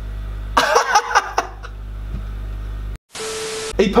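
A man laughing for about a second over a steady low electrical hum. Near the end the sound drops out for an instant, then a short burst of even hiss with a steady tone follows.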